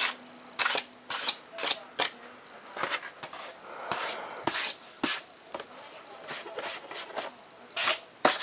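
Hands rubbing and brushing over a foam-board model jet airframe: a string of irregular short scuffs and light taps.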